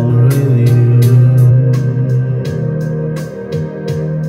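Electronic keyboard playing an instrumental passage: held organ-like chords over a strong low note, with a steady beat from the keyboard's backing rhythm.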